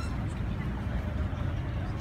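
A steady low rumble of outdoor background noise with no distinct events.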